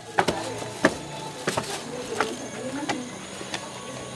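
Footsteps on concrete stairs, a short sharp tap about every two-thirds of a second, with faint voices behind them.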